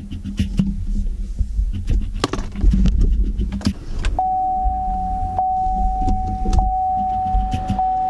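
Inside an SUV: clicks and handling noises over a low rumble, then about four seconds in, as the push-button start is pressed, the dashboard sounds a single steady electronic tone that holds, with faint ticks about once a second.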